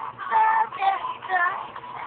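A young girl singing a pop song in short phrases.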